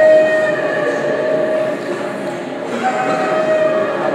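Held, sustained musical notes over a hiss, stepping to a new pitch about three seconds in: stage music under a darkened scene.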